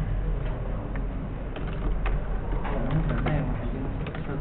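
Typing on a computer keyboard: a run of short key clicks at an uneven pace, over a steady low electrical hum.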